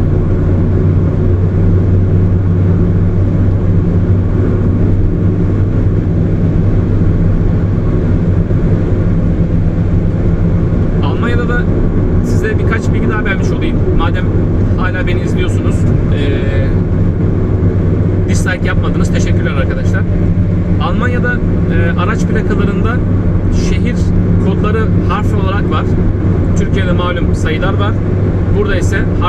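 Steady low drone of road and engine noise heard from inside a car cabin while driving on a motorway, with a person's voice talking over it in the second half.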